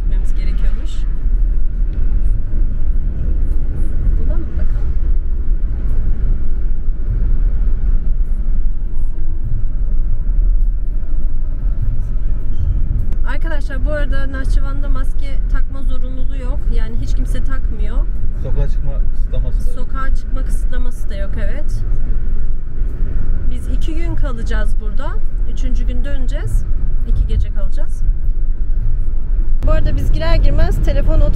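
Steady low rumble of a car driving, heard from inside the cabin. From about halfway through, a voice is heard over it.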